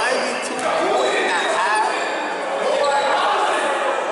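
Basketball bouncing on a gym floor among players' shouts and chatter, echoing in a large hall.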